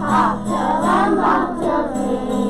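A class of young children singing a Christmas song together over instrumental backing music with steady low notes.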